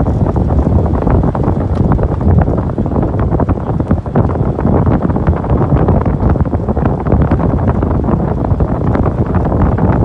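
Loud wind buffeting the microphone: a steady low rumble with dense crackling.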